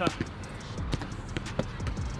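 Basketball being dribbled on a hard outdoor court: a string of short, uneven bounces.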